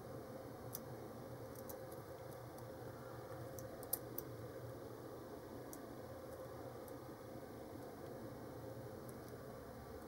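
Faint, scattered small clicks of a lock pick working the pin tumblers of a Cocraft 400 brass padlock held under tension, with one sharper click about four seconds in, over a steady background hum and hiss.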